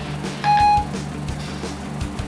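An iPhone 4S Siri tone: a single short beep about half a second in. Steady background music runs underneath.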